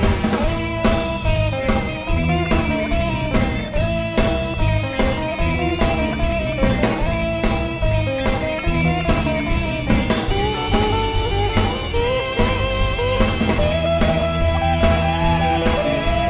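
Live ska band playing an upbeat number, a drum kit keeping a steady beat under electric guitar.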